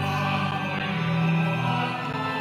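Church musicians singing a hymn with accompaniment, the entrance hymn of the Mass, in long held notes.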